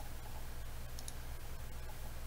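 Faint computer mouse clicks, a quick double click about a second in, over a steady low electrical hum.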